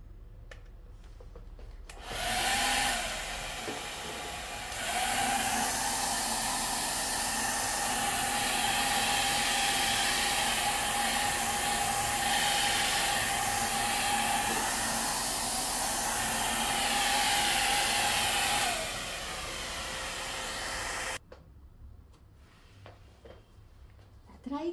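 Hair dryer blowing over a wet watercolour wash to dry it: a steady rush of air with a steady whine. It switches on about two seconds in, runs louder from about five seconds, drops lower near the end and cuts off suddenly a few seconds before the end.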